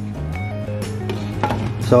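Background music with steady low notes, over a few light clinks of a glass lid being set onto a stainless steel stockpot.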